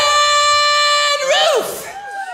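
A male singer belts one long, high held note into a microphone for about a second, with the drums and bass dropped out, then the voice swoops up and down in short slides.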